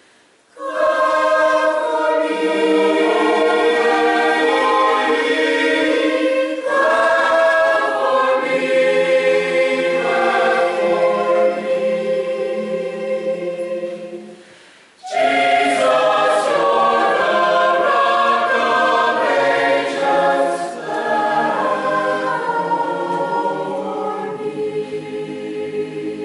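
Mixed-voice church choir singing a hymn anthem in sustained chords, in two phrases with a short break about halfway; the last chord fades out near the end.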